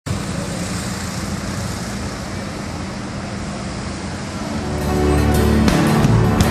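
Steady street traffic noise, with music fading in over it about four and a half seconds in, a low bass note under repeated strummed strokes.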